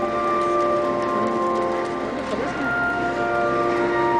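The Henry Willis pipe organ of Liverpool Anglican Cathedral playing loud held chords. The sound thins briefly about two seconds in, and a new sustained chord enters about half a second later.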